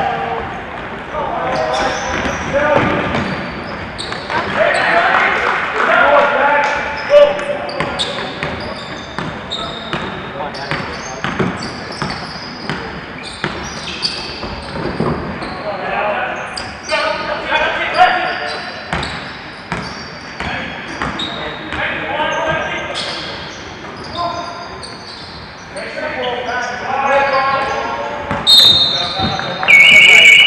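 Basketball game sounds in a large hall: a ball bouncing on the court amid indistinct voices of players and spectators, with a short, shrill whistle near the end.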